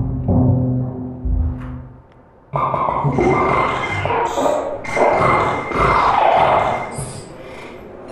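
Live electroacoustic laptop music made in Max/MSP: low sustained drone tones fade away by about two seconds in, then a dense, grainy noise texture cuts in abruptly with a thin steady high tone over it, swelling in the middle and thinning near the end.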